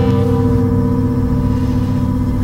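Experimental electronic music: a steady drone of several low tones held together.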